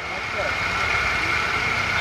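A steady engine-like rumble, low and even, with a faint steady high tone over it.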